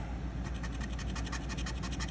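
Blue plastic scratcher scraping the scratch-off coating off a Monopoly instant lottery ticket in quick, rapid strokes, starting about half a second in.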